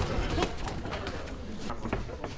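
Muay Thai sparring: a sharp knock of a strike landing about half a second in, then a string of lighter knocks and scuffs from glove contact and footwork on the ring canvas.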